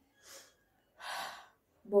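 A woman sniffing a roll-on deodorant held to her nose to smell its fragrance: a faint short sniff, then a longer, louder breath about a second in.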